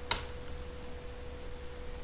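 A single sharp computer keyboard keystroke just after the start, with a fainter keystroke near the end. Under them runs a steady faint electrical tone with a low hum from the recording setup.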